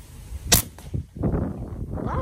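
A single air rifle shot about half a second in, a sharp crack, with a fainter snap just after as the pellet bursts the balloon target. Wind then rumbles on the microphone.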